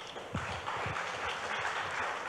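Light applause from a small audience, many hands clapping together in a steady patter that builds about half a second in.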